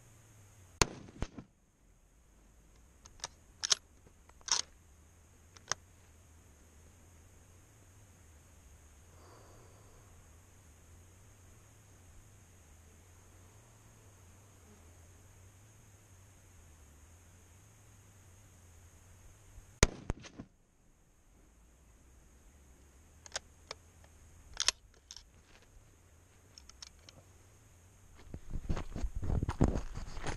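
Two rifle shots from a 1916 Lee-Enfield .303 bolt-action rifle fired from the prone position, one about a second in and the other about twenty seconds in. Each shot is followed a few seconds later by several small metallic clicks of the bolt being worked. Rustling movement starts near the end.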